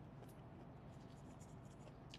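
Near silence: faint, even background noise.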